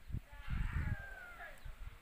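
A distant animal call, about a second long, its pitch falling near the end.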